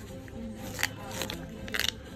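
Small fine-pointed scissors snipping through paper: a few short, sharp cuts, one a little under a second in, another soon after, and a quick double snip near the end. Faint background music runs underneath.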